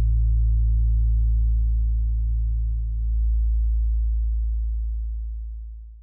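A deep, steady low drone of sustained bass tones from the soundtrack, fading out near the end.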